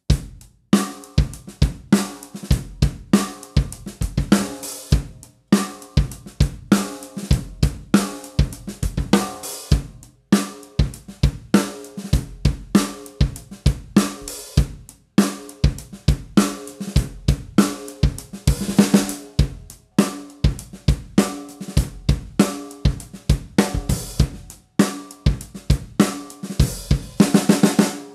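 DS Drum 14x6 seamless metal snare drums in medium tuning, played in turn (aluminium, then copper, then brass), struck with sticks in a steady series of strokes. Each hit rings on with a clear pitched shell tone under the buzz of the 22-strand spiral snare wires. The playing stops briefly about every five seconds.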